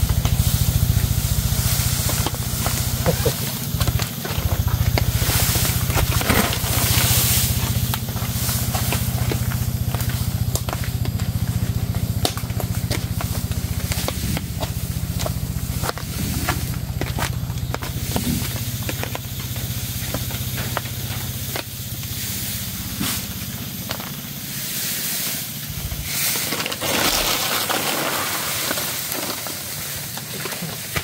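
Dry grass thatch panels rustling and crackling as they are handled and carried, with twigs and dry leaves crunching underfoot, over a steady low rumble that fades near the end.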